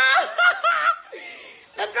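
A woman's high, excited voice holding a drawn-out shout, then breaking into short laughs; after a quieter lull she cries out "no!" again just before the end.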